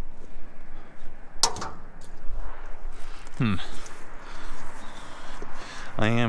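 Thin steel window frames being handled, with one sharp metallic clack about a second and a half in. About halfway through comes a short falling vocal grunt, all over a steady background hiss.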